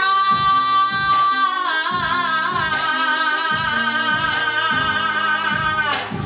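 A woman singing R&B live, holding one long high note with vibrato for nearly six seconds. The note steps slightly down in pitch about a second and a half in. Under it, a soft accompaniment plays regular low notes.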